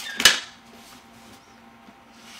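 A single sharp click of a knife blade against a hard surface about a quarter second in, followed by faint steady room hum.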